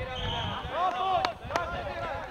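Children's voices calling out across a football pitch. Past halfway there are two sharp thuds of the football being struck, about a third of a second apart.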